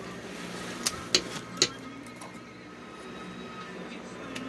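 Three light, sharp knocks close together, about a second in, as a window candle is handled and set back on the windowsill, over a faint steady hum.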